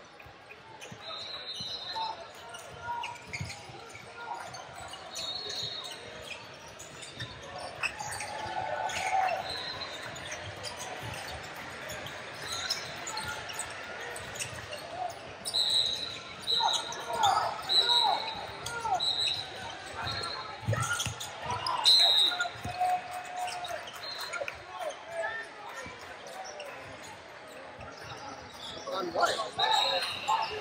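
Basketballs bouncing on a hardwood gym floor during play, with short high sneaker squeaks, most of them between about 15 and 22 seconds in, all echoing in a large hall.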